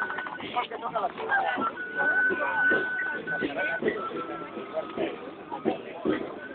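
Several people talking and calling out. Under the voices a thin, steady high-pitched squeal holds for a second or two at a time.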